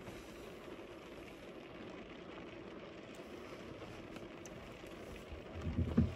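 Steady low hum and hiss inside a car cabin, the heater blowing with the engine running.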